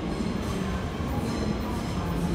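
Red DB Regio electric multiple unit running along the platform: a steady rumble with a faint hum, and no sharp knocks or squeals.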